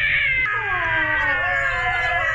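A person's long, high-pitched scream, wavering and sliding down in pitch, imitating goblins screaming as they burn.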